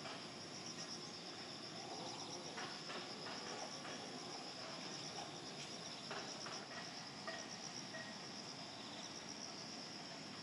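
Insects chirring in the trees: a steady, high-pitched pulsing trill that repeats evenly throughout.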